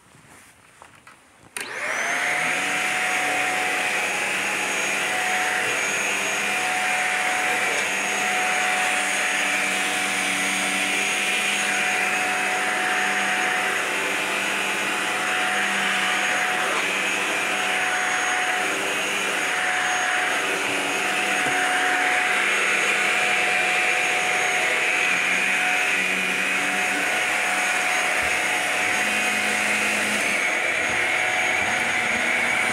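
Shark Apex upright vacuum switched on about a second and a half in, its motor spinning up quickly to a steady whine. It then runs steadily while being pushed over carpet.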